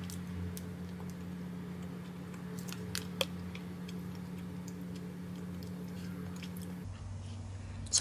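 A person chewing a bite of a soft, chewy blueberry protein bar with the mouth closed: faint wet clicks and squishes, one sharper click about three seconds in, over a steady low hum.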